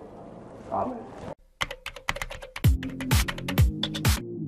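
Quick run of computer keyboard typing clicks, joined about two and a half seconds in by an electronic music beat with deep, falling bass kicks about twice a second.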